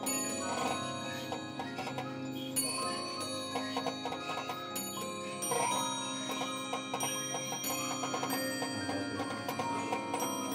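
Swiss mechanical cylinder music box playing a light, bell-like tune: the turning pinned cylinder plucks the steel comb in quick notes.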